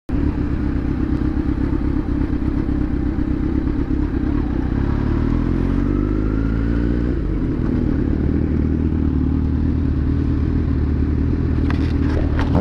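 Kawasaki Z900 inline-four motorcycle engine running under way. About five seconds in its pitch falls as the bike slows, then it settles to a steady low note as it rolls to a stop.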